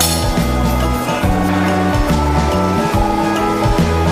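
Background music with a steady beat and a moving bass line.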